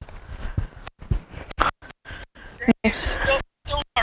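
Wireless microphone signal at long range: walking and wind noise with crackle that cuts out to dead silence several times, the transmitter breaking up near the limit of its range. A man's voice calls a name near the end.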